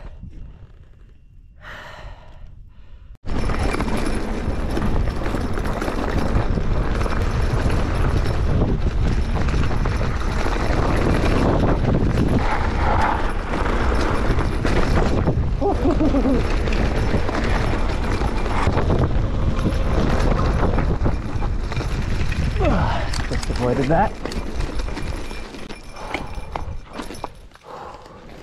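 Loud, steady wind rush on a handlebar- or helmet-mounted camera, mixed with the rolling and rattling of a mountain bike on a dirt fire road, starting abruptly about three seconds in after a quiet opening.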